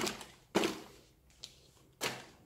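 Two short rustling knocks of cardboard packaging being handled, the second about half a second after the first, then a faint tick.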